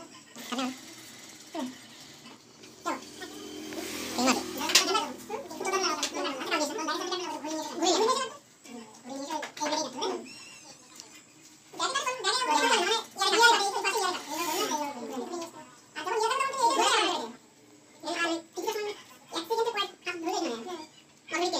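People talking in stretches of a few seconds with short pauses between; the speech is not clear enough to make out.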